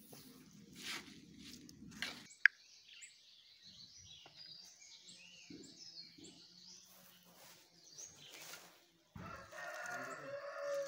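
A rooster crowing faintly, with other bird calls in the gaps between the workers' sounds. A single sharp click stands out about two and a half seconds in.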